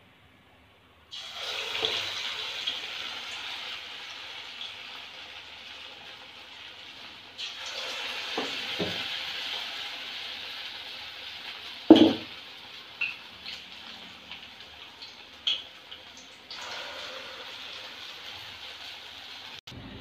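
Kara vada batter deep-frying in hot oil in an aluminium kadai, a steady sizzle that starts about a second in and swells again about seven and sixteen seconds in as more batter goes in. A few sharp knocks, the loudest about twelve seconds in.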